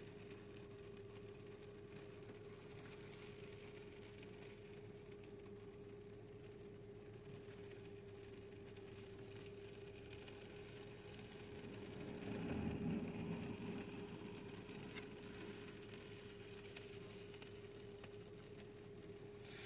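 Faint car cabin noise: a low engine and road rumble under a thin steady hum, swelling for a couple of seconds about twelve seconds in.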